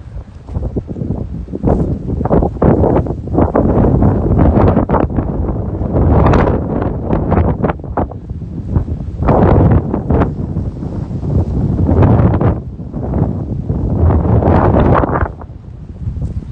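Strong gusty wind buffeting a smartphone's microphone: loud noise heavy in the low end that swells and falls back every second or two, easing just before the end.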